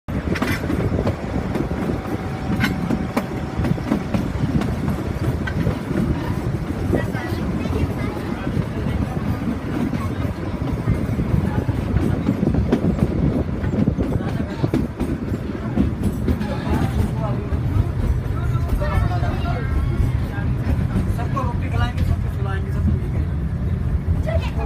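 Narrow-gauge passenger train running along the track, a steady rumble and rattle with scattered clicks from the wheels and carriage. Voices of people chatter over it in the last several seconds.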